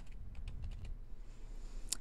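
Computer keyboard typing: a run of light, irregular key clicks.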